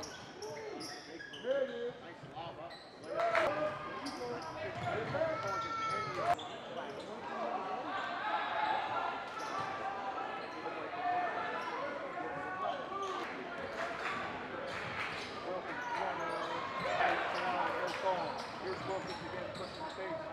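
Live basketball game in a gym: a basketball dribbled on a hardwood court and sneakers squeaking, over a steady jumble of players' and spectators' voices.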